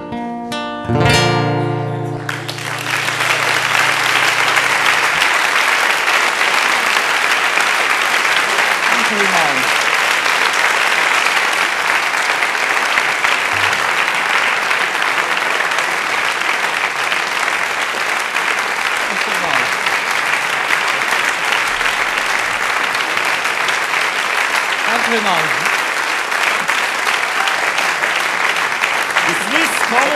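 An acoustic guitar's final chord rings out, then the audience breaks into steady applause that lasts to the end.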